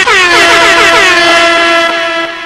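Loud air-horn sound effect in a dance remix: a quick stutter of short falling blasts that settles into one long, steady held horn tone.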